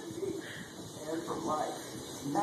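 A baby making soft cooing sounds, a few short vocalizations.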